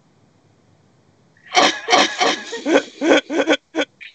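Laughter starting about a second and a half in after a short silence: a quick run of short, breathy voiced bursts, several a second.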